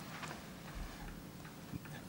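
Faint ticking over a low background hiss.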